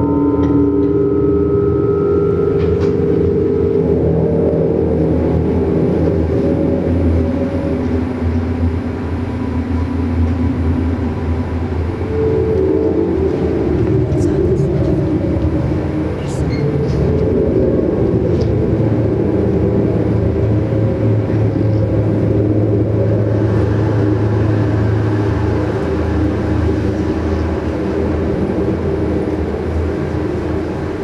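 Electroacoustic drone music from synthesized and analog-synthesizer material: dense, low electronic drones in layered sustained tones that slowly shift in pitch. Higher held tones at the start die away about two seconds in, and a few faint high clicks come in the middle.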